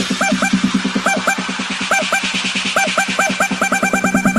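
Electronic dance music in a build-up: a fast pulsing beat under pairs of short rising notes that repeat and come closer together near the end.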